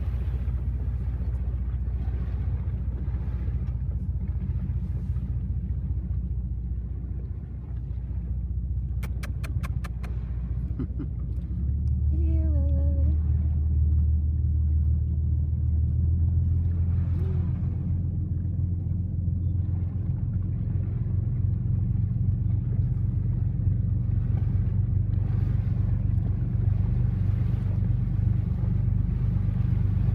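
Boat engine running with a steady low rumble that grows louder about twelve seconds in. A few sharp clicks come just before that.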